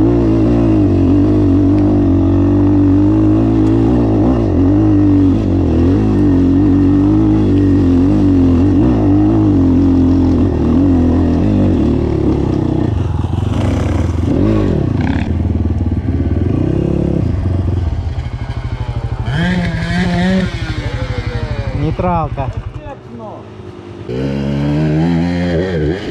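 Enduro dirt bike engine, the ZUUM CR300NC under its rider's helmet camera, held at steady high revs under hard throttle on a steep dirt climb for most of the time. About two-thirds of the way in it changes to revs rising and falling in short blips, with a brief lull near the end before another rev.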